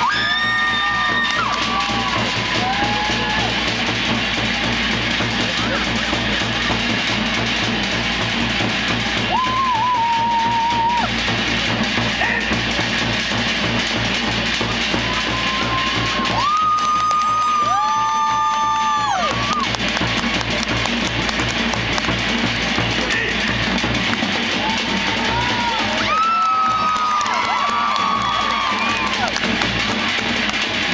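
Live music with fast, steady drumming accompanying a fire knife dance. Long, high held calls rise over it about four times.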